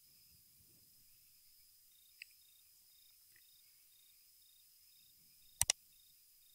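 Near silence with a faint high steady electronic whine, then a computer mouse button clicked twice in quick succession near the end.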